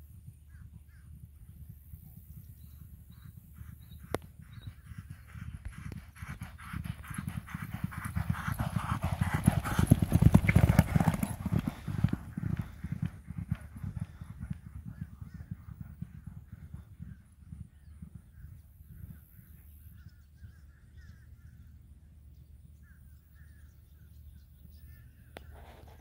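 Hoofbeats of two racehorses galloping on a dirt track, growing louder as they pass close by about ten seconds in, then fading away as they move off.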